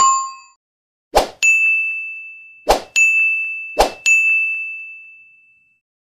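Subscribe-button notification-bell sound effect: a short burst of noise followed by a bright, ringing ding that fades slowly, heard three times about a second or so apart. A lower chime is fading out at the very start.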